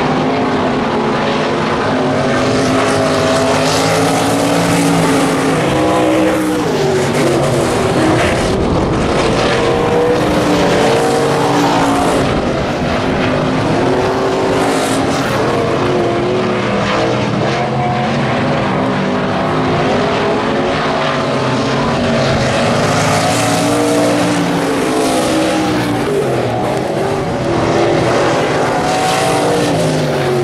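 Several IMCA Stock Car V8 engines racing at once. Their overlapping engine notes rise and fall as the cars accelerate and back off through the turns, with no break in the sound.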